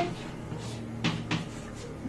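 Chalk writing on a chalkboard, with three sharp taps of the chalk against the board between about half a second and a second and a half in.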